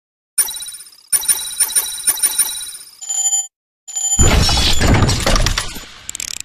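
Channel logo sting sound effects: a bright ringing chime, then rapid bell-like ringing about four strokes a second and a short steady tone. About four seconds in comes a loud rushing boom, the loudest part, fading toward the end.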